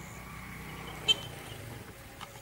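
A single short, sharp crack about a second in, over a low steady hum and a faint steady tone.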